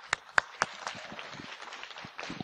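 Audience applauding: a few separate claps at first, then thickening into steady applause.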